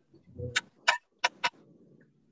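A soft low thump, then four short sharp clicks within about a second.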